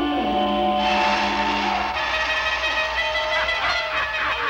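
Cartoon orchestral score with held notes; about a second in a loud hissing buzz joins it, the sawmill's spinning circular saw blade cutting into a log.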